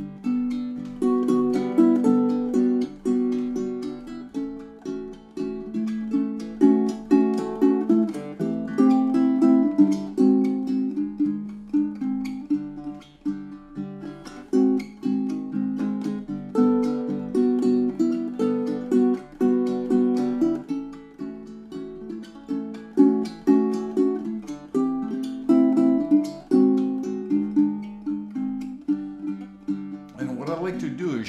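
A solo baritone ukulele (a 19-inch Pat Megowan Lyric with Amazon rosewood back and sides and a sinker redwood top) playing a song: a continuous run of plucked melody notes and chords. Its strings are brand new, put on the night before.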